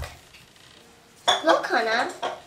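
A child's voice: a short high-pitched exclamation with a rising and falling pitch, starting a little over a second in after a quiet moment.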